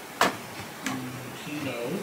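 A few sharp clicks or taps, the loudest just after the start, over faint background voice and music.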